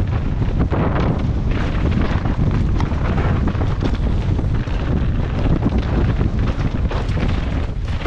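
Wind buffeting a helmet-mounted action camera's microphone, with the rumble and chatter of a downhill mountain bike running fast over a rough dirt trail. It is loud and continuous, full of small rapid knocks from the terrain.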